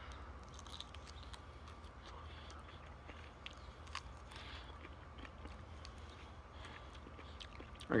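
Faint chewing and mouth sounds from a person eating the soft immature seeds and pulp of a raw moringa pod, with a few soft clicks scattered through, over a steady low background hum.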